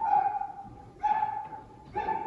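An animal whining: repeated short, high whines of steady pitch, each under a second long and about a second apart.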